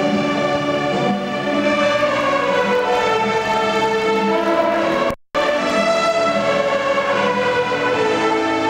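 A large group of young violinists playing together, sustained bowed notes moving from one pitch to the next. The sound cuts out completely for a split second about five seconds in.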